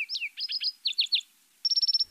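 Small birds chirping: short downward-sweeping chirps in quick groups of three or four, then a rapid high trill near the end.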